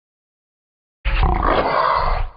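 A big cat's roar, a sound effect that starts suddenly and loudly about a second in after silence.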